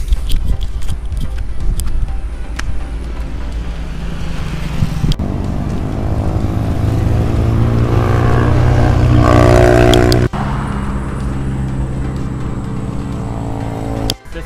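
Road traffic passing close by on a multi-lane road, with wind rumbling on the camera microphone. About five seconds in, a vehicle's engine grows steadily louder as it comes up alongside, then the sound cuts off abruptly about ten seconds in.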